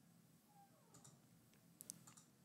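Near silence with a few faint clicks: one about a second in and a quick pair near the end.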